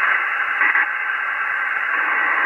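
Hiss from a Xiegu X6100 HF transceiver's receiver: the steady band noise of an open sideband channel, heard between transmissions while the operator listens for a station to answer his call.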